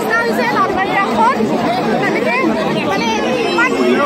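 Dense crowd chattering at close range, many voices talking over one another.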